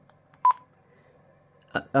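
A single short keypad beep from a Quansheng UV-K5 handheld radio as its menu key is pressed, about half a second in.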